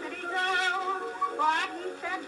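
A woman singing a popular song with wide vibrato, on an early acoustic-era 78 rpm recording that has almost no bass.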